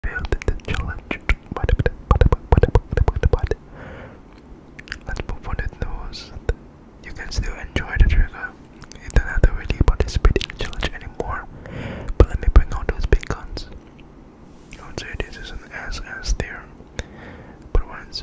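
Close-microphone ASMR whispering with wet, clicking mouth sounds. A dense rapid run of clicks fills the first three and a half seconds, then whispered sounds come in several stretches with scattered clicks between them.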